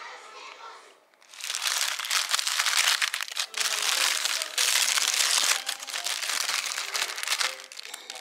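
McDonald's paper burger wrapper being unfolded and crinkled by hand, a loud dense crackle that starts about a second in and runs until the bun is uncovered near the end. Faint voices sound beneath it.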